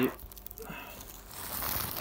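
Grow-tent fabric and its reflective lining rustling and crinkling as a flap is pushed aside, getting louder toward the end.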